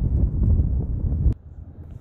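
Wind buffeting the microphone outdoors, a dense low rumble that stops abruptly about a second and a half in, followed by a much quieter stretch.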